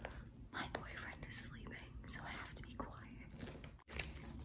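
A woman whispering, keeping her voice down because someone is asleep nearby. It cuts off suddenly just before the end.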